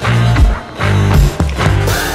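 Music with a steady beat: drum hits over a bass line.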